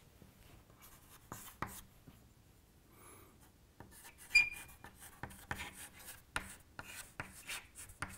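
Chalk writing on a chalkboard: a few scattered scratches and taps at first, then a short, sharp squeak of the chalk about four seconds in, the loudest sound. Quick, dense scratchy strokes follow as words are written.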